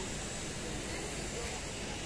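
A steady, even hiss of outdoor background noise with faint voices of people in the background.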